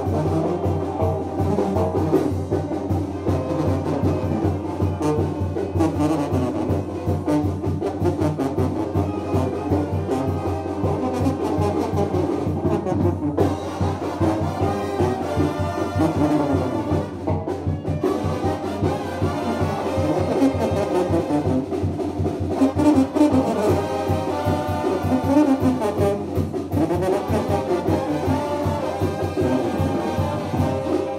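Brass band playing a dance tune with trumpets and trombones over a steady beat.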